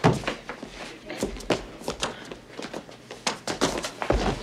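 A scuffle in a doorway: a quick, irregular series of knocks and thuds as people are shoved about.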